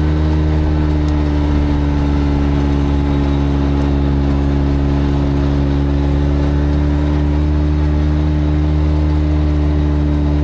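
Side-by-side UTV engine running at a steady pitch while driving a dirt trail, heard from on board the machine, with road and tyre noise beneath it.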